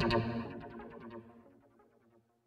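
Background music fading out, dying away to silence about a second and a half in.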